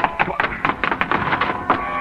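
Radio-drama sound effect of hurried footsteps, a fast run of sharp taps several a second, with music held underneath.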